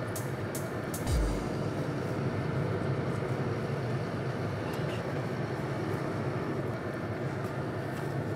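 Steady low rumble inside a passenger bus with its engine running, and one deep boom about a second in.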